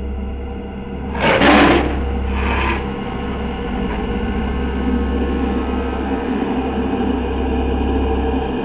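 Low, steady rumbling drone of a dark horror-style soundtrack, with two short hissing whooshes about a second and two and a half seconds in, the first one louder.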